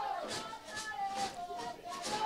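Faint background voices from the stadium, with a few drawn-out, chant-like notes.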